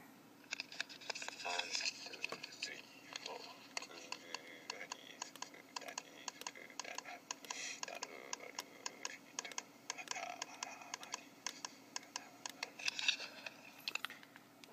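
Light tapping, a few sharp taps a second, with a faint voice now and then underneath.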